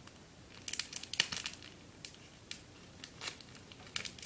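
Packaging crinkling and crackling as it is handled, in short irregular bursts, thickest about a second in and again a little after three seconds.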